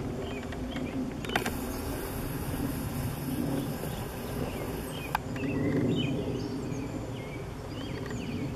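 Outdoor garden background noise: a steady low rumble with a few sharp clicks, and short bird chirps in the second half.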